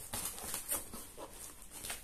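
Packing tape being ripped off a cardboard box and a flap pulled open: a run of short, irregular tearing and scraping noises.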